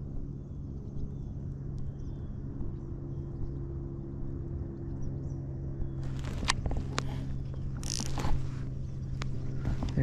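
A steady low hum runs throughout, with faint bird chirps in the first half. From about six seconds in come a run of clicks and knocks and a brief rustle as the baitcasting rod and reel are handled during the retrieve.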